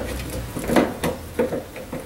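Hands working the plastic inner fender liner in the wheel well, giving a handful of short, irregular clicks and knocks.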